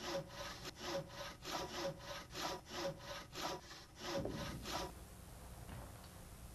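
Hand saw with a blade of mixed fine and coarse teeth cutting through a wooden board in quick, even back-and-forth strokes. The sawing stops about five seconds in.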